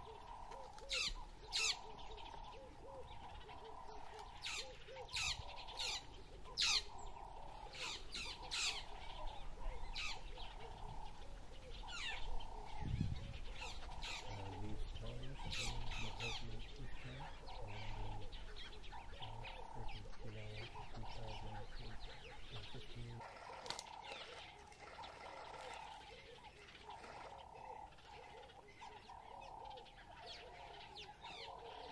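Wild birds calling in the bush: a run of sharp, downward-sweeping chirps, over a lower call repeated about every second and a half.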